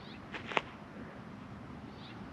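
Quiet outdoor background: a faint steady hiss, with one short high-pitched sound about half a second in.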